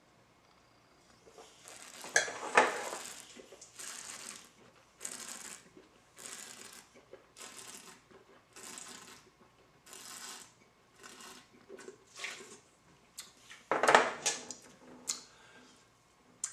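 Wine taster slurping a mouthful of red Garnacha, with a loud slurp a couple of seconds in and then a run of short hissing draws of air through the wine about once a second to aerate it on the palate. He then spits it into a metal pail used as a spit bucket; a loud splash lands near the end.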